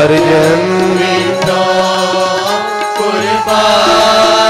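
A Sikh congregation singing a kirtan refrain together in held, chant-like notes, with steady instrumental accompaniment underneath.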